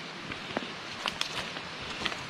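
Quiet outdoor background: a steady, even rushing noise, with a few faint light ticks between about half a second and a second and a half in.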